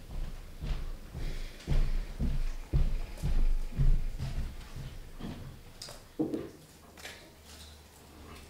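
Footsteps: a series of low, heavy thuds about two a second, fading after about four seconds, then a short knock a little after six seconds.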